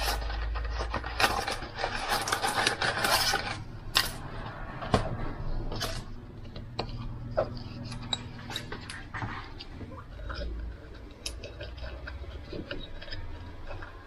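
Dry rustling and crackling as dried bay leaves are pulled from a cardboard packet, dense for the first few seconds, then scattered light clicks and taps as leaves are pushed into a small glass jar of tomatoes.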